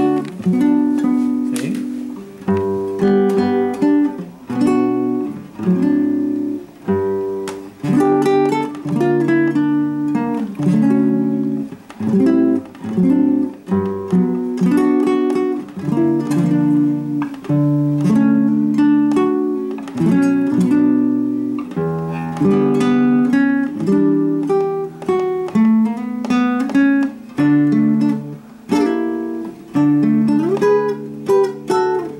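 Nylon-string classical guitar played solo in chord-melody style: plucked chords ringing one after another, with the melody carried in the top notes.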